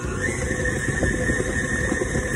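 KitchenAid Ultra Power stand mixer running with its speed raised, kneading dough in a stainless steel bowl. A motor whine comes in a moment in, rises slightly in pitch and holds steady over the rumble of the gearing and dough.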